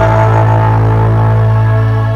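Music with a low note held steadily, its overtones sustained unchanged throughout.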